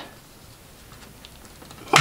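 Quiet handling: a few faint small clicks and rubs as thumbs press a watch's metal case back against the case. The back does not snap into place.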